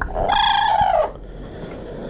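A parrot giving one loud, drawn-out call with a slightly falling pitch, lasting just under a second.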